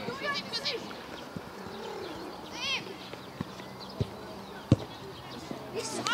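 A football being kicked: a few short, sharp thuds, the loudest about three-quarters of the way through, among faint distant shouts of players.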